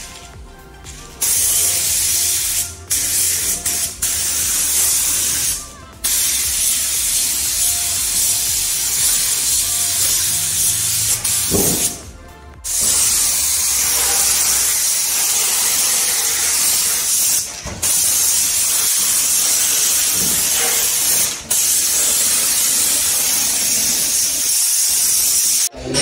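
Compressed-air paint spray gun hissing as it sprays, stopping and restarting several times as the trigger is let go, with the longest pause about halfway through. A low steady hum runs under the first half.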